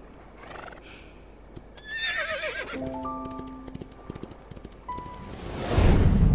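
Edited music and sound-effect cue: about two seconds in, a wavering, falling whinny-like cry, then plucked notes climbing upward over scattered sharp clicks. Near the end a loud swelling whoosh leads into soft sustained music.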